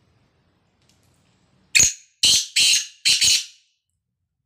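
Caged male black francolin calling: a loud, harsh phrase of five grating notes that begins almost two seconds in, one note, a short pause, then four in quick succession.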